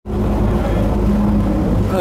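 Boat's engine running steadily under way, a loud, even, low drone.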